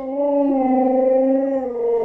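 A Siberian husky howling: one long, drawn-out call held at a nearly steady pitch.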